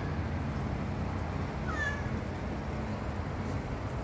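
A domestic cat meowing once, a short call that bends in pitch, about two seconds in: the call of a cat stuck up on a ledge and unable to get down. A steady low rumble runs underneath.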